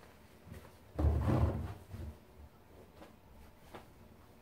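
A fabric rag rug pushed into the drum of a front-loading washing machine: one soft, heavy thud with a rustle of cloth about a second in, then a few faint light knocks.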